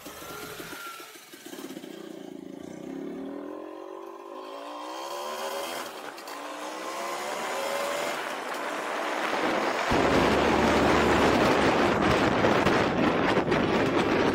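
Vintage Vespa VBB scooter's two-stroke engine pulling away from a stop, its pitch climbing in several rises as it goes up through the gears. From about ten seconds in, loud wind noise on the microphone takes over and covers the engine.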